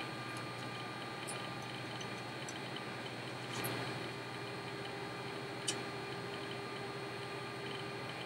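Quiet room hum with a few faint clicks and ticks as a Mathews VXR compound bow is drawn back, the QAD drop-away rest's launcher lifting to its upright position; one click a little past halfway is sharper than the rest.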